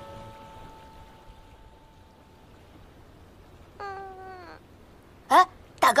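A lingering musical tone fades out, then about four seconds in comes a single short animal cry, under a second long, falling in pitch. Near the end a young voice calls out.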